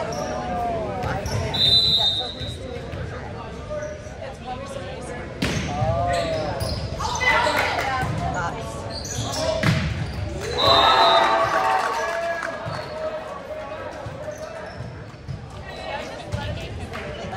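Indoor volleyball rally in an echoing gym: volleyballs being hit and bouncing, with sneakers squeaking on the hardwood. A short high referee's whistle sounds about two seconds in and again near eleven seconds, and the second is followed by loud shouting from players and spectators as the point ends.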